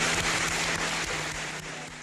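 Audience applauding, a dense patter of many hands clapping, over a steady low hum, fading out toward the end.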